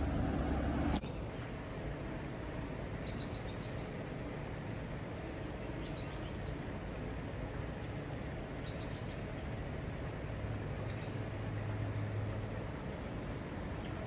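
Steady outdoor background rush beside a creek, with faint short high bird chirps every few seconds and a low hum for a couple of seconds near the end.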